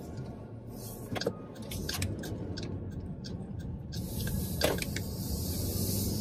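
Car cabin noise while driving: a steady low road and engine rumble with a few faint clicks, and a high hiss that joins about four seconds in.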